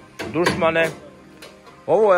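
Background music with a voice singing: one sung phrase, then a short pause, and another phrase starting near the end.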